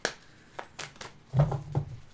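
Tarot cards being handled: a few light clicks of the deck, then a louder dull bump about one and a half seconds in.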